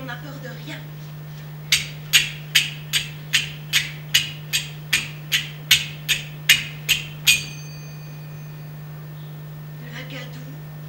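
Small hand-held percussion struck in an even series of about fourteen sharp clicks, a little over two a second, the last one left ringing with a clear metallic tone. A steady low hum lies underneath throughout.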